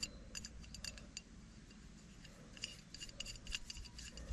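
Light metallic clicks and ringing clinks from fingers working a small locking pin in a steel scaffold pipe joint: a quick run of ticks in the first second, then another cluster in the second half.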